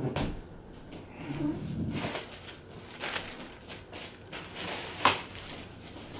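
Light clicks and knocks of plastic toy soldiers being handled and set down on a wooden tabletop, with one sharper click about five seconds in.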